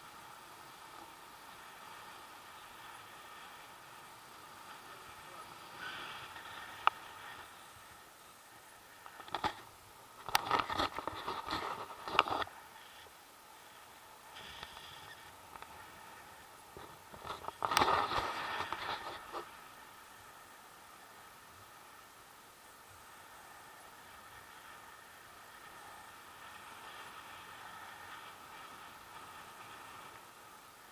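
Airflow rushing over an action camera's microphone during a tandem paraglider flight, steady and fairly quiet. It is broken by two louder, rougher stretches with sharp clicks, about ten seconds in and again about eighteen seconds in.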